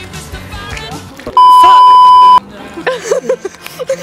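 A loud, steady single-pitch electronic bleep, about a second long and starting about a second and a half in, of the kind dubbed over a word to censor it. Background music with a beat plays before it, and voices follow it.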